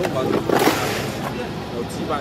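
Men's voices talking at a busy wharfside fish market over a low steady hum, with a brief loud rushing noise about half a second in.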